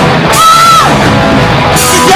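Live punk-rock band playing loud, with electric guitars and drums, and a high note held for about half a second near the start.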